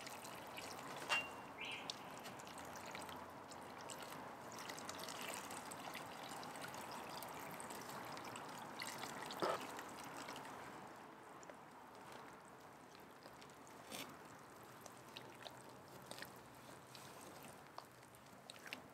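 Water poured from a plastic basin into a pot of dry pond mud, a faint steady pour for about the first ten seconds. Then it goes quieter as the wet mud is stirred with a small metal trowel, with a few light knocks.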